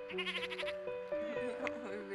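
A lamb bleating once, briefly, near the start, a short wavering call, with background music of held notes playing under it.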